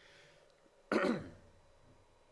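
A man clearing his throat once, about a second in: a brief, loud rasp that falls in pitch.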